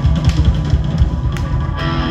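Live rock band playing, with drum kit, electric guitar, bass and keyboard. The drum beat stops near the end and a held chord rings on as the song winds down.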